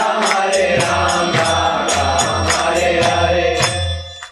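Devotional kirtan chanting: sung voices over a steady beat of hand cymbals, about three strikes a second, and a low drum. It stops abruptly near the end.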